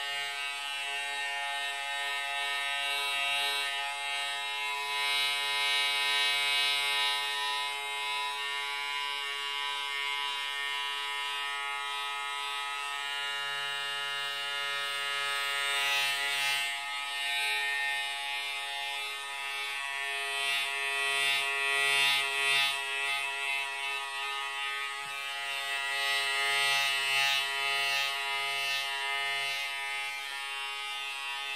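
Electric hair clipper running continuously with a steady buzzing hum; the higher, hissy part of the sound swells and fades every few seconds.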